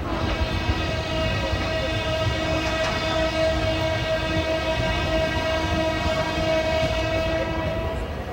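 Train horn held on one long steady note for about eight seconds, over the low rumble of a moving train.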